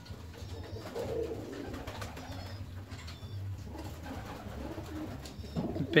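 Young fancy pigeons cooing softly, a low murmur, with a few faint high chirps.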